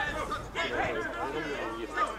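Indistinct chatter of several voices talking and calling out at once, with no words made out.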